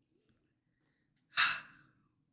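A man's single short breathy exhale, like a sigh, about one and a half seconds in.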